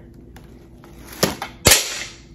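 Two sharp knocks about half a second apart, the second the loudest and followed by a brief rustle: loose items that had not been taped down falling out of the gift basket.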